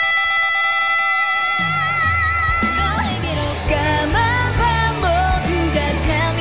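Female vocalist singing a pop-rock song live, holding one long, high belted note for about the first three seconds. The low end of the backing drops away under the held note and comes back in about two seconds in, then she sings on over the full backing.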